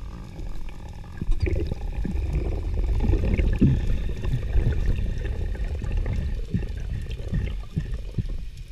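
Low underwater rumble of water rushing past a camera housing as a freediver descends, with scattered faint knocks.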